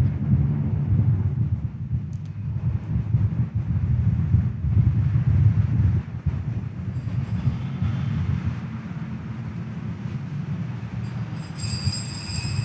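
Low, uneven rumble of a large church's room noise, with no speech, and a few faint high tones near the end.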